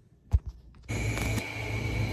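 A single short thump, then from about a second in a steady hum and hiss with a thin high whine over it: a room air conditioner running.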